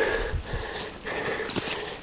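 Footsteps and brushing through dry scrub: twigs and leaf litter crackling and rustling, with a few low bumps about half a second in.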